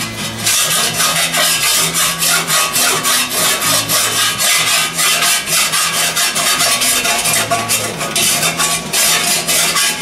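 A file rasping in quick, repeated back-and-forth strokes over lead body filler on a motorcycle fender, shaving the lead down to the fender's contour.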